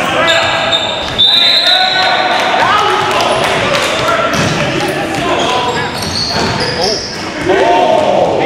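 Basketball game on a hardwood gym floor: the ball bouncing, brief high sneaker squeaks and players calling out, all echoing in the large hall.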